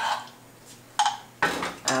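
A metal spoon gives a single sharp clink against the frying pan about a second in, followed by a short scraping rustle.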